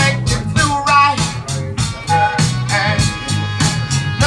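Recorded music played through Wilson Audio Alexia loudspeakers: a song with a singing voice, bass and a steady beat.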